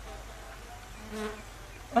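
Quiet background with a brief faint buzz a little over a second in.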